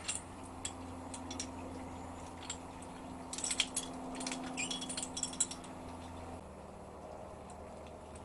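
Small metallic clicks and clinks from a hand tube bender and a brake line being worked as the line is bent to 90 degrees. The clicks come in two clusters in the middle, over a steady low hum that drops away about six seconds in.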